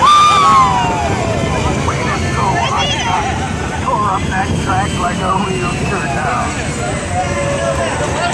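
Riders on the open Radiator Springs Racers ride vehicle whooping and cheering at speed, over a steady rush of wind and track rumble. A loud whoop falling in pitch comes right at the start, followed by several overlapping shouts.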